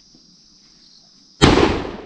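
A large firecracker bomb goes off with a single loud bang about one and a half seconds in, its boom fading away over the next half second. Before it there is steady insect buzzing.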